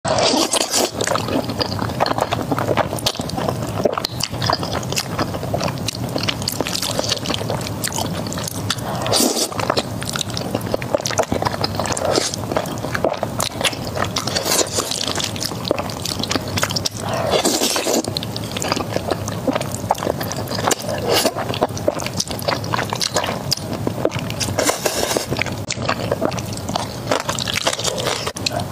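Close-miked mouth sounds of eating spicy noodles: wet slurping and sticky chewing, with many small clicks and several longer slurps spread through.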